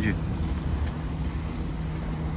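Outboard motor of a small motorboat running as it moves along the river: a steady low hum under wind rumbling on the microphone.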